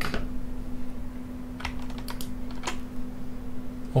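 Three light clicks of a computer keyboard and mouse, about half a second apart, as a Command-click is made, over a steady low electrical hum.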